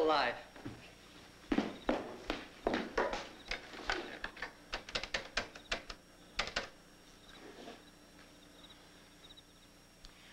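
A brief voice at the start, then about five seconds of irregular knocks and clicks, quickest near the middle: footsteps and a desk telephone being picked up and dialed.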